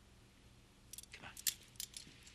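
Metal handcuffs clicking and jangling as they are closed on someone's wrists behind his back: several sharp clicks starting about a second in.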